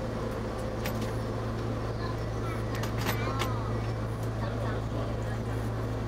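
Diesel railcar's engine running steadily at idle, a constant low drone heard from the driver's cab, with a few faint clicks.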